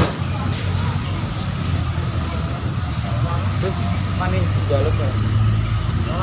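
Voices talking in the background over a steady low hum, with one sharp click right at the start.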